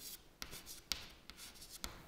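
Chalk writing on a chalkboard: faint scratching strokes with a few sharper ticks about half a second in, near one second and near the end.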